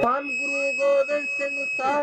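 A steady high-pitched tone held for nearly two seconds over a voice, cutting off suddenly just before the end, between abrupt edits into and out of the surrounding singing.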